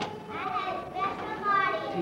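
Young children's high-pitched voices, in two short stretches.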